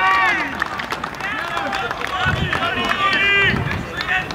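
Excited, high-pitched shouting from several people celebrating a goal, in repeated drawn-out yells.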